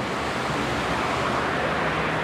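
Steady rush of road traffic noise from cars passing on the street, an even hiss with no distinct events.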